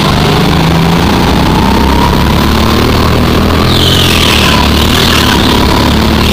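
Go-kart engine running hard, heard loud and close from a camera mounted on the kart, its pitch rising and falling as the driver works the throttle. A higher hiss joins about two-thirds of the way through.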